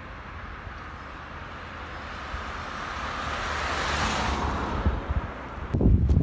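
A car passing by on the road, its tyre and engine noise growing louder to a peak about four seconds in and then fading. Wind rumbles on the microphone throughout and buffets it harder near the end.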